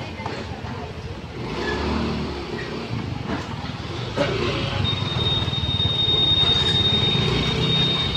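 Small motor scooter engines running at a crowd of lined-up bikes, getting louder about four seconds in as the scooters start moving off. A steady high-pitched tone joins from about five seconds in.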